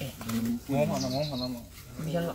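Low human voices close by, with a short, high bird twitter about a second in.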